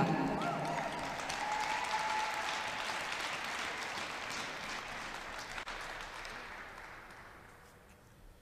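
Audience applauding in an ice rink. The applause is loudest at first, then dies away gradually over several seconds.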